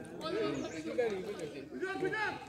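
Voices talking indistinctly, several people chattering.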